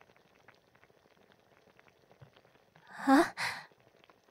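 Near silence, then about three seconds in a woman's breathy sigh that ends in a short voiced "ah".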